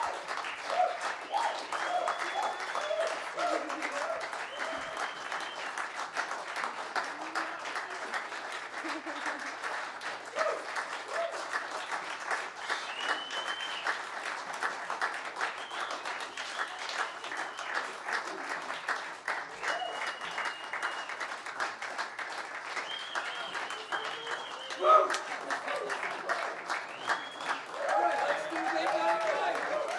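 Audience applauding, with cheering voices and several high, brief whistles or cries through the applause.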